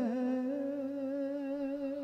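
A man singing a line of a ghazal, holding one long steady note with a slight waver at the end of the phrase 'nahin hai'.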